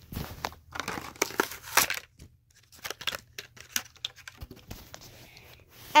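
Hot Wheels blister-card package being torn open by hand: plastic blister and card crinkling and ripping in irregular bursts, busiest in the first two seconds, then scattered clicks and rustles as the die-cast truck is worked free.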